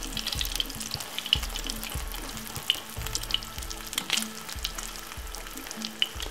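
Beaten egg frying in plenty of oil in a nonstick frying pan: a steady sizzle with scattered crackles and pops. A slotted spatula scrapes lightly as the egg is folded over.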